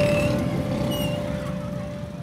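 Street traffic: cars running by with a steady low rumble. A single held note of soundtrack music sounds over it.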